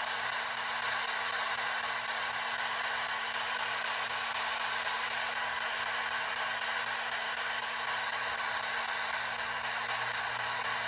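P-SB7 spirit box radio sweeping the band in reverse at 250 ms per step, giving a steady hiss of static.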